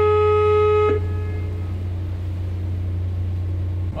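A boat's horn sounding one steady, single-pitched blast that cuts off about a second in, over the steady low drone of the cruise boat's engine.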